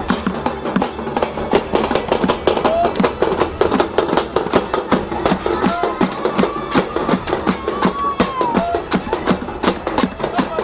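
An improvised band of buckets, pans, a plastic barrel and a hand drum beaten with sticks, clattering in a dense, uneven rhythm, with voices giving short calls over it.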